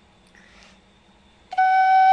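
An end-blown duct flute comes in about one and a half seconds in, sounding the first note of a tune and holding it steady.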